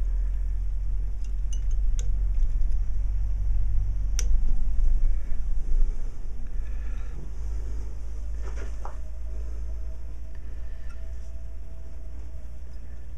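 A few faint sharp clicks from needle-nose pliers and fine music wire being handled, over a steady low rumble that swells in the middle.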